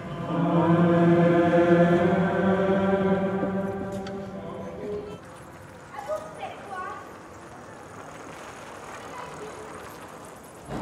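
Voices in a church chanting one long held note, which fades out about five seconds in; quiet ambience follows.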